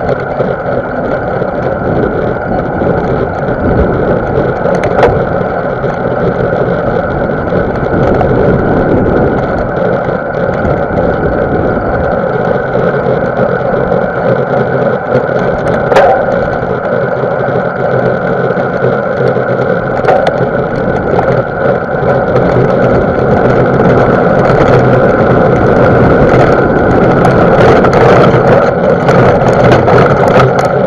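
Mountain bike riding over a sandy dirt trail, heard from a camera carried by the rider: a steady rush of tyre and wind noise with a few sharp knocks from bumps, growing louder in the last several seconds.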